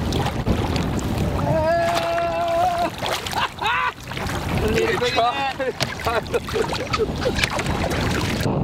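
Men's excited shouts: one long held call about a second and a half in, then shorter whoops, over a steady low rumble of wind on the microphone.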